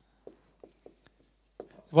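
Marker pen writing on a whiteboard: a string of short, faint strokes, with a spoken word starting right at the end.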